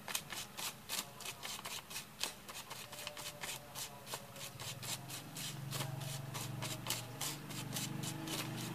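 Paper rustling and scratching as a small dark disc is rubbed through a heap of black powder on a hand-held sheet, in rapid irregular scrapes. A low hum comes in about five seconds in.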